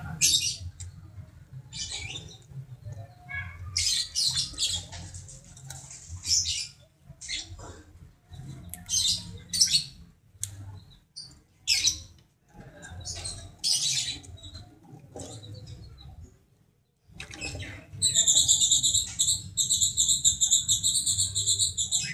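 Caged lovebird giving short, high-pitched chirps and squawks with brief gaps between them. In the last few seconds it breaks into a continuous, rapid chattering trill: the long 'ngekek' song that lovebird keepers prize.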